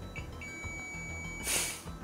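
Fluke multimeter beeping steadily with its probes across a desoldered power-supply component, which conducts in both directions: the component is shorted. The beep is broken near the end by a short, loud hiss.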